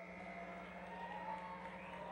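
A quiet break in the band's playing: a steady low hum from the stage sound system, with faint thin tones ringing over it.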